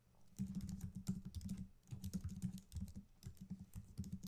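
Typing on a computer keyboard: a quick run of keystrokes starting about half a second in, broken by brief pauses.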